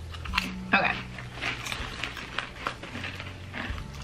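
Crisp potato chips crunched between the teeth while being bitten and chewed, heard as a string of irregular, sharp crackles.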